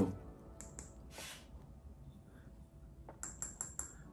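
A shiny candle-vessel lid tapped with a finger: a couple of clicks about a second in, then about five quick taps near the end, each with a high ping that sounds like glass.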